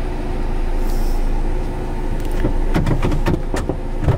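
Car engine idling with a steady hum, heard from inside the cabin, with a few short knocks and clicks about two and a half to four seconds in.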